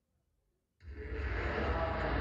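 Near silence, then under a second in the performance's backing track cuts in abruptly with a steady wash of noise and heavy bass.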